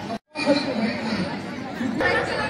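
Indistinct chatter of several people talking around the camera, broken by a brief dropout to silence a quarter-second in.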